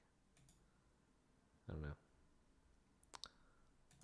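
Computer mouse clicks over near silence: a couple of faint clicks about a third of a second in and a sharper double click just after three seconds, as a dropdown option is picked. A short muttered phrase falls between them.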